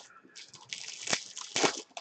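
Plastic-foil wrapper of a pack of baseball cards crinkling as it is handled and opened, in a run of quick crackly rustles.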